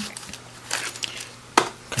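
A small cardboard ribbon box being opened by hand and its contents pulled out: faint rustling, with one sharp click about one and a half seconds in.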